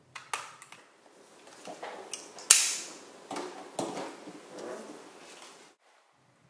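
Hand-held corner rounder punch (a Corner Chomper) snapping through cardstock corners: a handful of sharp clicks spread over a few seconds, the loudest about two and a half seconds in, with faint handling of the card between them.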